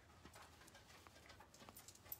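Near silence: room tone with a few faint, scattered light ticks.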